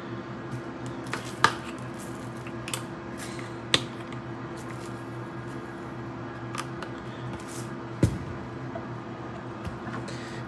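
Black beans being squished with a masher in a bowl, a soft wet mashing sound over a steady low hum. A few short sharp knocks and clicks come in, the loudest about a second, four seconds and eight seconds in.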